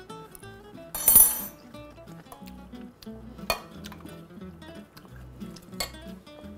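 Soft background guitar music under the scrape and clink of a fork tossing pasta salad in a bowl: a scraping rush about a second in, then sharp clinks about halfway and near the end.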